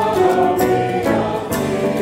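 Mixed choir singing a Christmas anthem in harmony, holding chords that change about a second in and again near the end.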